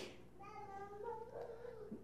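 A short click, then a faint, high-pitched drawn-out voice held for about a second and a half, stepping up in pitch partway through.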